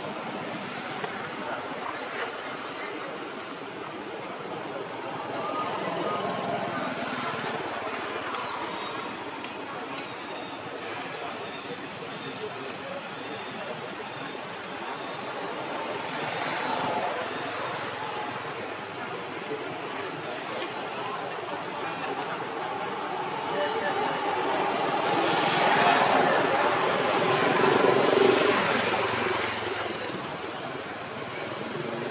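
Outdoor background noise: a steady noisy wash with indistinct distant voices, swelling louder for several seconds near the end.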